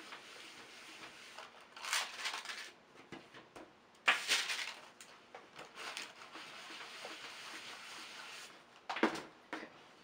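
Clothes iron sliding and pressing over parchment paper on a perler bead panel: a rustling, scraping paper noise with a sharp knock about four seconds in and a steadier scraping stretch after it.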